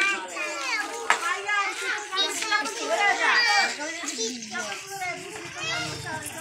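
Several children's voices calling and chattering over one another, with one short sharp click about a second in.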